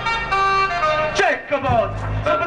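Festival song music holding one long, steady note, then loud voices calling out over it with falling pitch from just past a second in.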